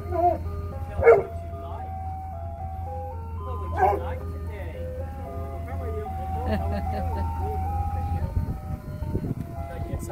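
Ice cream truck jingle playing: a tinkling melody of steady stepping notes from the truck's loudspeaker, over a steady low hum.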